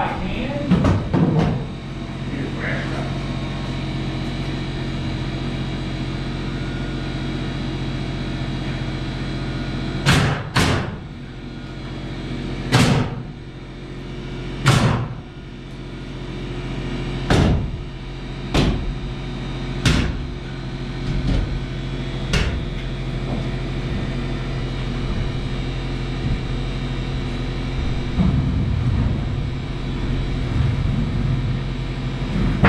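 Nail gun firing about eight times into overhead framing lumber, the shots one to two and a half seconds apart in the middle of the stretch, over a steady low hum.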